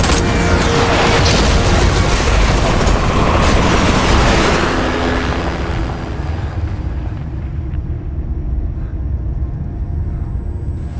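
Film sound effects of a large explosion: a dense roar with debris over the first four to five seconds, thinning about five seconds in to a low rumble that carries on to the end.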